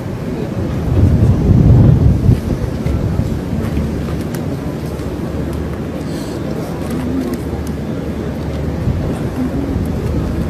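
Wind buffeting the microphone over a steady low engine rumble on an airfield apron, with a strong gust about a second in.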